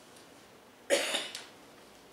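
A person coughs once, about a second in: a sudden sharp burst that fades within half a second.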